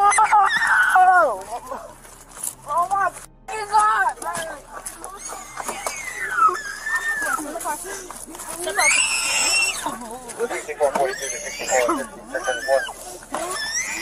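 Shouting and screaming voices during a physical struggle as officers force a resisting man into a police car. There is a loud, strained yell about nine seconds in.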